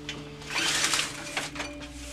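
A venetian blind being pulled down over a door's glass, its slats rattling in one brief burst about half a second in, followed by two light clicks.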